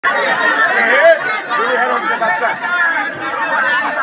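Several people talking loudly over one another, a tangle of overlapping voices.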